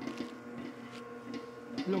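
Commercial planetary stand mixer running with a steady motor hum, its flat paddle beater kneading ciabatta dough in a stainless steel bowl.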